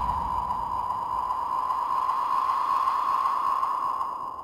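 Closing tail of an electronic dubstep track: the bass has dropped out, leaving a steady band of filtered, hiss-like noise at a middle pitch with faint high tones above it.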